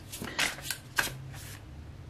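Tarot cards being shuffled and handled by hand, with a few short, sharp card flicks, as a card is drawn and laid on the spread.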